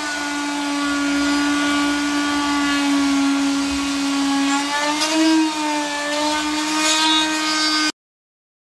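Power flush-cutting tool running steadily with a high hum, cutting away partly cured, still gummy epoxy fillet ridges on a fiberglass boat hull. Its pitch dips and then rises slightly just past halfway, and the sound cuts off suddenly near the end.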